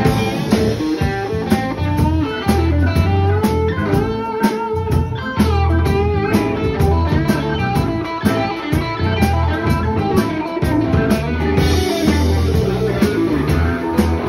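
Live blues band playing an instrumental passage, electric guitars over bass and drums, with a guitar line of bent, wavering notes about four to six seconds in.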